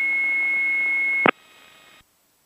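A steady high-pitched tone over the aircraft radio from the automated weather broadcast (AWOS), left hanging between readings. It cuts off with a click a little over a second in, and the audio drops to a faint hiss.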